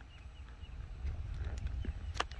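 Horse's hooves stepping softly on a dirt arena floor, a few faint thuds over a low rumble.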